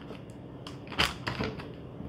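A few light clicks and knocks as raw butternut squash cubes are picked up off a plastic cutting board and dropped into a zip-top plastic bag, the sharpest click about a second in.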